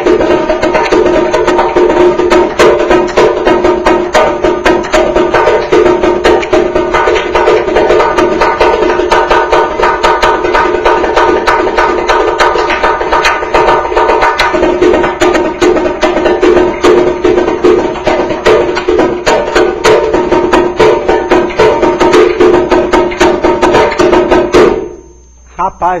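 Samba repinique (repique) drum played solo with stick and hand: a fast, unbroken rhythm of sharp strikes over a ringing, high-pitched drumhead tone, cut off abruptly about a second before the end.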